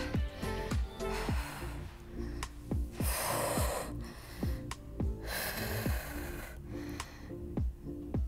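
Background music with a steady beat, over which a woman takes two deep breaths into the microphone during a cool-down stretch: one about three seconds in and a longer one about five seconds in.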